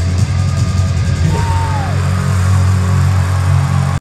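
Live heavy rock band playing loudly in an arena, heard from the crowd, with heavy bass and distorted guitars. About a second and a half in, one note slides down in pitch.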